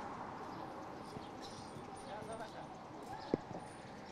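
Faint outdoor street ambience with distant voices, and a single sharp click a little over three seconds in.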